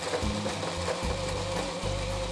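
Electric hand blender running in its chopper bowl, puréeing chunks of tomato into liquid: a steady motor whine over the churning of the juice.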